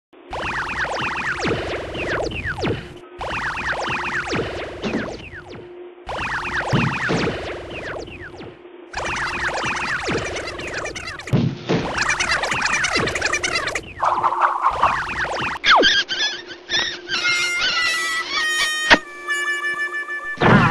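Cartoon soundtrack: music mixed with comic sound effects, full of falling whistle-like swoops, in short loud segments that cut off abruptly every few seconds. It ends in a run of steady electronic beeps and sharp clicks.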